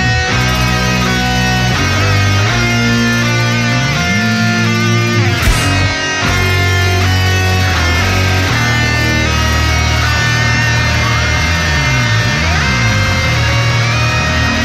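Instrumental passage of a heavy rock song: electric guitars and bass playing held chords, with no vocals. A bass note slides up about four seconds in, the band drops out for a moment near six seconds, and notes slide down and back up around twelve seconds.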